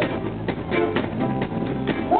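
Live soul band playing, with drum hits over the backing, in a short gap between the lead singer's vocal phrases.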